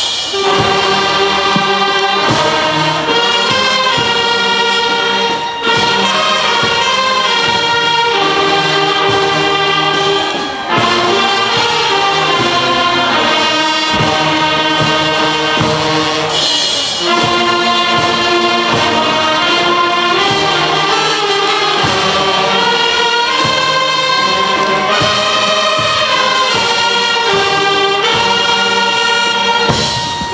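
Brass band of saxophones, trumpets and sousaphones playing a slow melody in long held notes, phrase by phrase, with short breaths between phrases.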